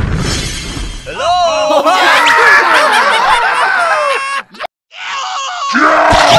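A crashing, shattering sound effect with a low rumble, then several high-pitched cartoon voices squealing and wailing over one another without words, cut off briefly by a moment of silence about four and a half seconds in before the voices return.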